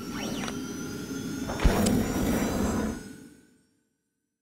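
Closing logo sound effect: a sweeping whoosh, then a deep hit about one and a half seconds in with a bright chime just after, and ringing tones that fade out well before the end.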